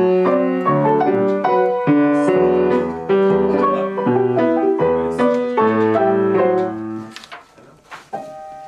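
Acoustic piano played four-hands by two players: a run of struck chords and sustained melody notes that stops about seven seconds in.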